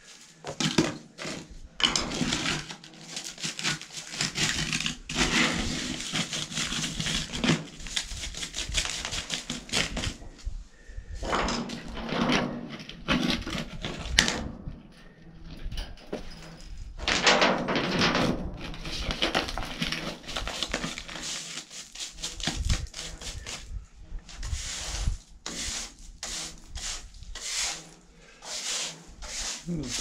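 Hand brush sweeping and scraping grit and gravel across the perforated steel plates of a gold dredge's trommel into a dustpan, in repeated scratchy strokes with brief pauses.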